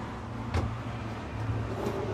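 A sharp click about half a second in and a fainter one near the end, from the bathroom vanity's cabinet hardware as a drawer is pulled open. Both sit over a steady low hum.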